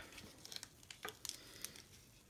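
Faint rustling and a few soft ticks as a thin ribbon is tied into a bow around a folded paper card.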